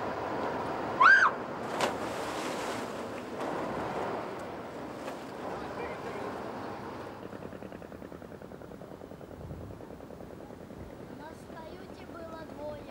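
Wind and water noise out on open river water, with one short, high, rising-and-falling whistle-like call about a second in and a sharp knock just after. From the middle on it grows quieter, leaving a faint fast pulsing.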